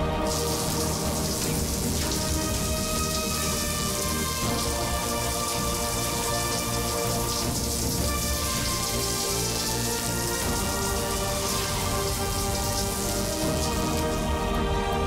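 Steady hiss of rain, starting just after the start and cutting off near the end, laid over sustained background music.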